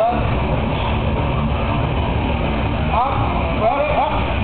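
Men shouting short, urgent calls at a lifter straining under a heavy bench press, over a loud, constant rumble of gym noise. One shout comes right at the start and a cluster of shouts about three seconds in.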